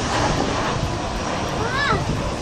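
Background chatter of people talking, over low wind rumble on the microphone, with one voice rising and falling near the end.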